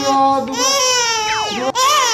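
Toddler crying loudly in long, high-pitched wails while held still for an eye examination, with a brief catch between wails about three-quarters of the way in.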